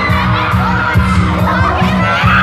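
Pop backing track with a steady bass beat playing through PA speakers, while an audience shrieks and cheers in high-pitched wavering squeals, strongest in the second half.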